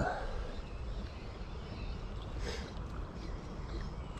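Steady low rumble of wind buffeting the microphone, with a faint brief rustle about two and a half seconds in.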